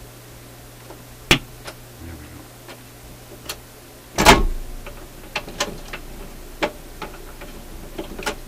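A vintage record changer cycling over a steady low amplifier hum: a few sharp clicks, a loud clunk about four seconds in, then lighter mechanical clicks as the tone arm lifts and the record drops.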